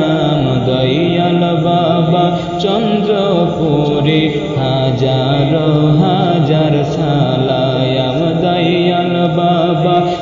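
Bengali devotional gojol sung in a chant-like style: voices carrying a slow melody over musical accompaniment, steady and unbroken.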